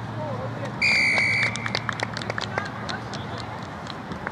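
Referee's whistle blown in one steady blast of under a second, about a second in, followed by a scatter of sharp clicks.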